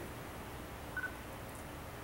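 Room tone: low, steady background noise with one brief, faint high beep about a second in.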